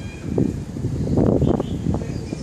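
Wind buffeting the microphone in uneven gusts, strongest a little past the middle.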